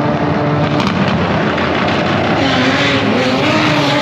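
Drag racing car engine running hard down the strip, loud throughout, with the engine note wavering up and down through the second half.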